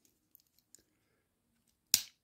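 Victorinox Handyman Swiss Army knife blade snapping shut against its spring with one sharp click near the end, after a couple of faint ticks as it is folded.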